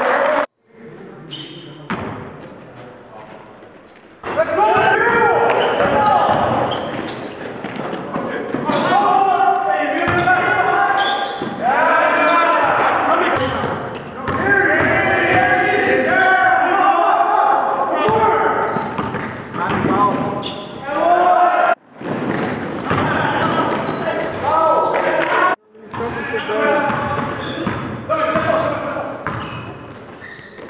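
Live sound from an indoor basketball game: a basketball bouncing on a hardwood court and players' voices calling out, echoing in the gym. The sound cuts off abruptly several times where the clips change.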